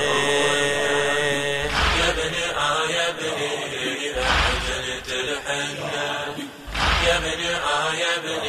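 Male voices chanting a slow Shia lamentation (latmiya) refrain in long held notes, with a deep beat about every two and a half seconds.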